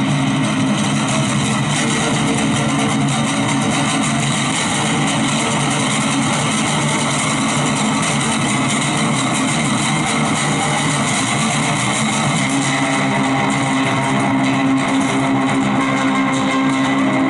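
Solo amplified roundback acoustic-electric guitar played with fast, dense picking: a continuous stream of notes over steady low tones, at an even level throughout.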